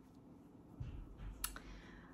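Faint handling noise as a knitted sweater is lifted and moved: a low rumble and light rustling, with one sharp click about one and a half seconds in.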